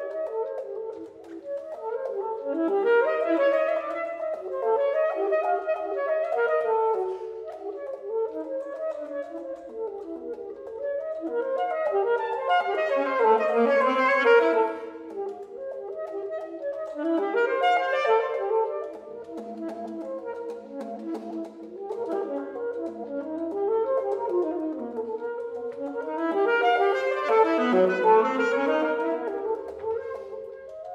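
Saxophone playing fast runs of short, rapidly changing notes that swell in waves, loudest just before the middle and again near the end.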